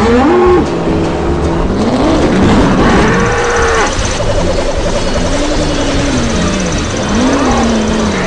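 Soundtrack music with long, slow low tones that rise and fall.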